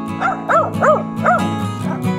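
A dog giving four short yelping calls, each rising and falling in pitch, over background music with steady held notes.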